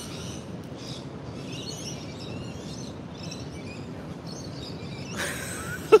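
Outdoor street ambience: a steady background hum with birds chirping high and intermittently over it. A short burst of noise comes near the end.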